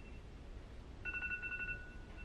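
Phone alarm ringing faintly: a high electronic tone in short repeated bursts, the longest from about a second in. The alarm marks the time for a newborn's scheduled blood sugar check.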